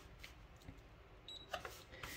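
Mostly near silence, with a faint button click and a short high beep a little past halfway as an MHW-3Bomber digital coffee scale is switched on.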